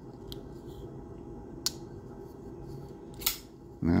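Three short metallic clicks from folding pocketknives being handled, a faint one first and the loudest near the end, over a steady low room hum.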